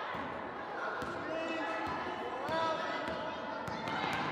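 A basketball bouncing a few times, unevenly, on a hardwood gym floor as it is dribbled, with voices calling out over it.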